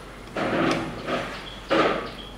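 A person slurping spaghetti noodles close to the microphone, in about three short, noisy slurps.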